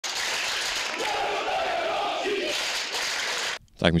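Crowd noise, a steady mass of cheering and shouting, that cuts off abruptly about three and a half seconds in.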